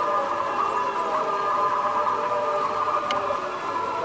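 Electric drive motor and gearbox of an Axial SCX10 II RC crawler whining steadily as it crawls over loose rock, a layered high whine that wavers a little with throttle.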